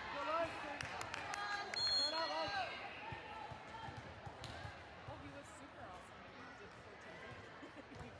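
Players' and spectators' voices shouting and calling in an echoing gym, loudest in the first few seconds, with a few sharp smacks of a volleyball being struck.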